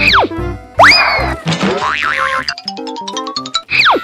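Cartoon comedy sound effects over light background music: a quick falling whistle at the start, a loud rising whistle with a noisy burst about a second in, a slow rising tone midway, and another falling whistle near the end.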